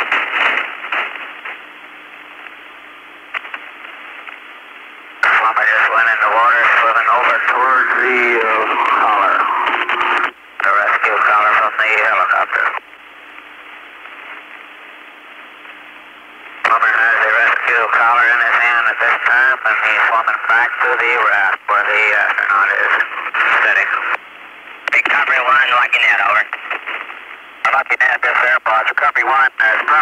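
Two-way voice radio traffic with a narrow, tinny sound: three long stretches of hard-to-make-out speech over a steady static hiss, with hiss alone between them.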